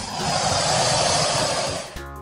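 Velociraptor sound effect: one long, harsh, noisy call with no clear pitch, cutting off right at the end.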